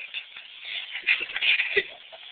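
Rustling and shuffling of fabric and camcorder handling, with small clicks and a soft knock near the end.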